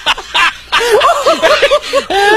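Human laughter: a quick run of short ha-ha chuckles, getting louder about a second in.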